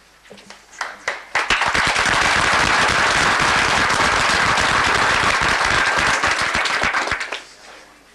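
Audience applauding: a few scattered claps, then full applause from about a second and a half in, holding steady for about six seconds and dying away near the end.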